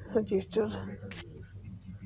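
A man's voice speaking briefly, then a single sharp click from a computer keyboard about a second in.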